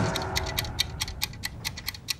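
A steady ticking pulse, about five even ticks a second, like a clock, with a faint held tone underneath early on.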